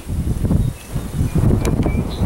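Wind buffeting the microphone outdoors: an irregular low rumble that swells and dips. A faint click comes about one and a half seconds in.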